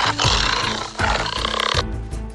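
A loud, rough animal roar effect laid over background music, in two surges, breaking off near the end.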